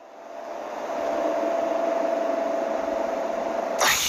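A rushing noise with a steady hum under it, swelling up over the first second and then holding, with a short loud burst near the end: a sound effect from an animated series.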